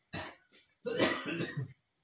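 Coughing: a short cough just after the start, then a longer, louder, rougher one about a second in.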